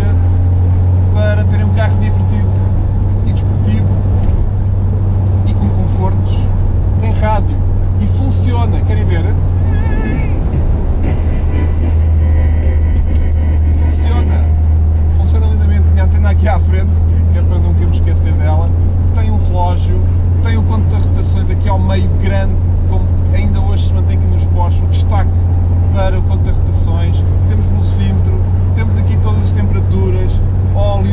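A 1970 Porsche 911T's air-cooled flat-six engine running under way, heard from inside the cabin as a steady low drone whose note shifts briefly about ten seconds in.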